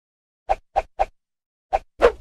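Short cartoon-style pop sound effects of an animated logo. Three come in quick succession from about half a second in and a fourth near the end, with a louder pop starting right at the end.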